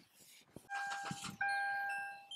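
Electronic chime: a steady pure beep tone that starts about two-thirds of a second in and gets louder and fuller about halfway through, after a few faint clicks.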